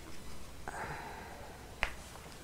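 A soft, breathy sound lasting about half a second, then a single sharp click near the end.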